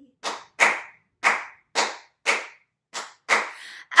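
Hands clapping a New Orleans rhythm that follows the phrasing of "How are you? I'm fine": seven sharp claps in an uneven pattern, with short gaps between them.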